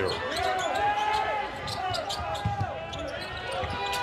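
A basketball being dribbled on a hardwood court, with repeated sharp bounces, while sneakers squeak in short rising-and-falling chirps over the arena's crowd noise.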